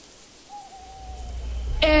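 One long hooting call, falling slightly in pitch, over a low rumbling drone that swells toward the end.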